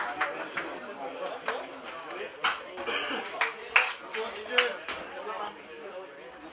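People talking in the background, with about five sharp smacks scattered through.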